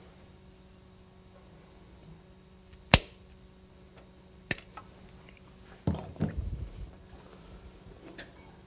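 Hand work on a rubber fuel line at a carburetor: a sharp click about three seconds in, a smaller one a second and a half later, then a short stretch of rustling and knocking as the line is handled and fitted.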